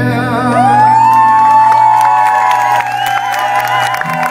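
Live rock band holding a chord on electric guitars and bass. From about half a second in, the audience whoops and cheers over it with rising cries.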